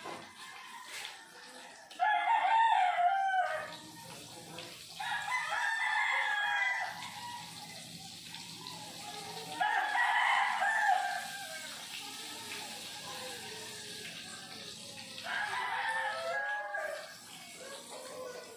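A rooster crowing four times, each crow lasting about a second and a half, over the faint steady sizzle of food frying in oil in a wok.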